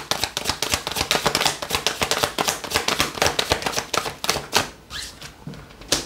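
A deck of tarot cards being shuffled by hand: a rapid run of sharp card clicks and flicks that thins out after about four and a half seconds.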